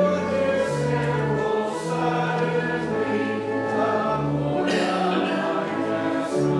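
Congregation singing a hymn at a slow tempo, with a pipe or electronic organ holding sustained chords underneath; the notes change about once a second.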